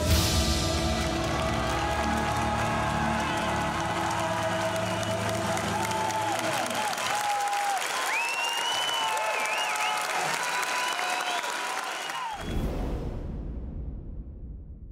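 A theatre audience applauding and cheering under a music bed of held chords. The low notes of the music drop away about halfway through, and a deep low rumble swells in near the end.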